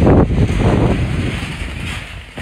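Wind buffeting the microphone: a loud low rumble that eases off toward the end.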